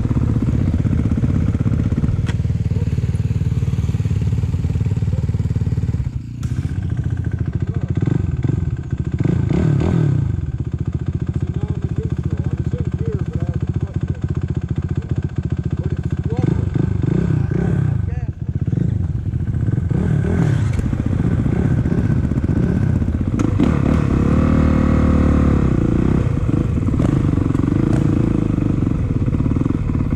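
Dirt bike engines running at idle, a steady low engine sound throughout.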